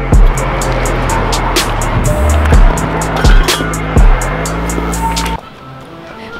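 Background electronic music with sustained bass notes and deep, booming kick-drum hits that drop in pitch. It cuts off suddenly about five seconds in, leaving quieter background noise.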